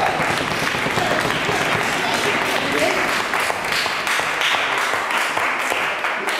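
A small audience of children and adults applauding, a steady patter of hand claps, with voices calling out over it.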